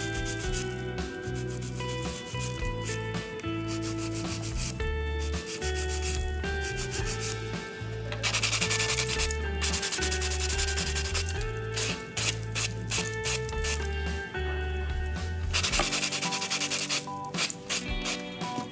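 Fast back-and-forth scratching strokes of a nail file and a sponge buffer block on an acrylic nail extension as it is shaped and smoothed, loudest in two bursts, around the middle and near the end. Background music with a bass line plays under it.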